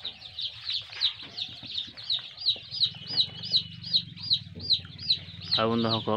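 A brood of young chicks peeping: a steady stream of high, arching chirps, about three or four a second, over a low steady hum.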